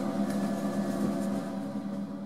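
Steady mechanical hum of a running machine, holding one low pitch with several steady overtones, beginning to fade near the end.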